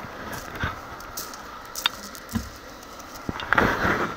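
Quiet roadside ambience with a few scattered light clicks, and a brief louder rustling noise near the end.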